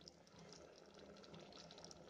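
Very faint bubbling of thickening guava jelly syrup boiling in a steel pot, small irregular pops over a low hiss.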